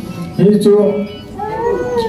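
A man's voice speaking, then stretching one sound into a long, high, wavering cry that rises and falls through the second half.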